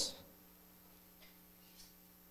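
A pause in the speech: faint room tone with a low, steady electrical hum, as the end of a man's spoken phrase dies away at the very start.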